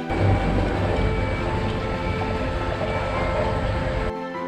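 Live outdoor site sound cut in over the background music: a loud, steady rumble and rush with heavy low end, starting and stopping abruptly. Faint music continues underneath.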